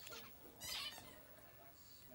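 Caged pet parakeets chirping faintly, with short high calls and the loudest a little under a second in.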